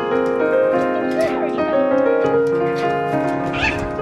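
Background music with sustained piano or keyboard notes, over which come two short, wavering calls, about a second in and again near the end, from the sulphur-crested cockatoos being hand-fed.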